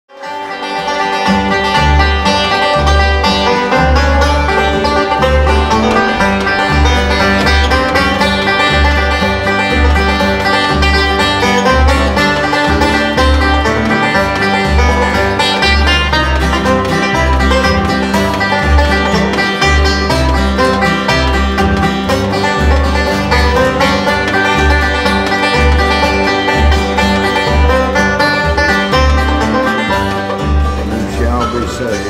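A bluegrass instrumental led by fast banjo picking, with guitar and a steady bass line underneath. It starts within the first second.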